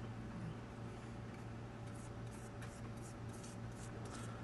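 Paintbrush bristles stroking sealer onto a carved poplar board: a run of quick, soft scratchy strokes in the second half, over a steady low hum.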